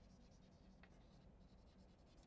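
Near silence, with faint scratching of chalk on a blackboard as a word is written.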